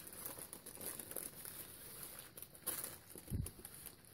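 Faint rustling and crinkling of a plastic sheet and paper as a painted paper page is lifted and handled, with a soft bump a little after three seconds in.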